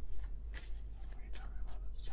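A deck of tarot cards being shuffled by hand: a quick, irregular run of soft flicks and riffles of card stock, over a low steady hum.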